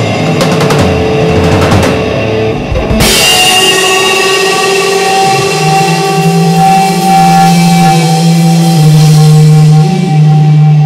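Live rock band playing loud, with drum kit, cymbals and electric guitar. About three seconds in the drumming drops away and long held, ringing guitar notes carry on.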